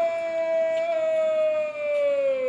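A man's drawn-out shouted parade word of command, held on one loud note that slowly sinks in pitch.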